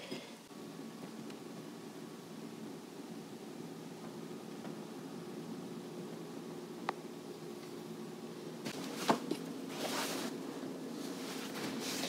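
A steady low hum made of several faint tones, with one sharp click about seven seconds in and brief rustling around nine to ten seconds.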